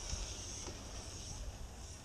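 Faint outdoor background: a low wind rumble on the microphone under a steady high hiss, with a couple of faint ticks.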